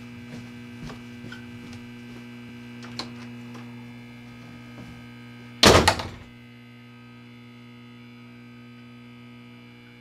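Faint footsteps on a wooden staircase, then a door shutting with a loud thud just under six seconds in, over a steady electrical hum.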